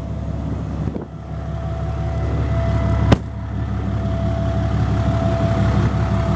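Diesel pickup engine, the Ram 2500's 6.7-litre Cummins turbo diesel, running at a steady idle with a thin steady whine over the rumble, and one sharp click about three seconds in.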